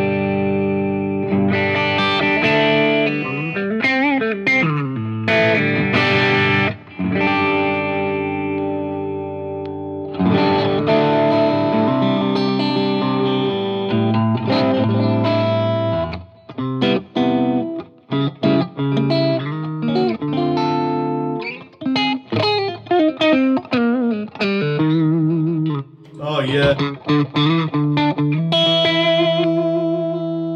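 2016 Gibson Les Paul Standard electric guitar played through a Marshall JCM800 amp with an EP Booster and reverb and delay, on a fairly clean, lightly driven tone. Ringing chords with a string bend about four seconds in give way at about sixteen seconds to a faster run of short, clipped notes and chord stabs.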